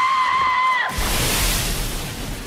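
Cartoon explosion sound effect: a high, steady held tone cuts off just under a second in and gives way to a sudden loud blast with a deep rumble and hiss that slowly fades.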